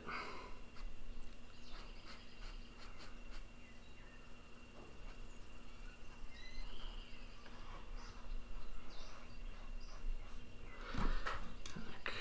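Faint scratches and ticks of a pen on paper as a drawing is sketched, over a steady low hum. A few faint short chirps come about six and a half seconds in.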